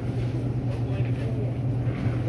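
Supermarket background noise: a steady low hum with faint, indistinct voices in the background.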